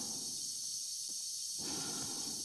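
Steady hiss with faint breathing inside an astronaut's space-suit helmet.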